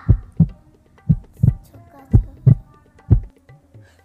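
Heartbeat sound effect: deep double thumps, one pair about every second, four times.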